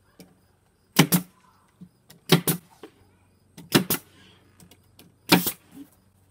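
DeWalt 18-gauge pneumatic brad nailer firing four times, about a second and a half apart, each shot a sharp double crack, driving 1¼-inch brad nails through a trim strip into a board in single-shot mode.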